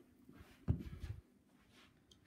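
Quiet room tone with one brief, low thump about two-thirds of a second in.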